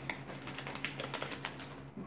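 Irregular light clicks and taps of handling close to the microphone as an arm reaches across in front of it.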